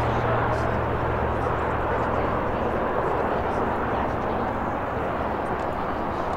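Outdoor field ambience: a steady wash of noise with the distant, indistinct chatter of players gathered on the sidelines. A low engine drone fades out about two to three seconds in.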